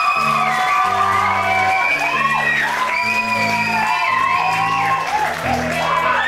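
Rock band playing live: electric guitars with bent, gliding notes over a bass line that steps between held low notes.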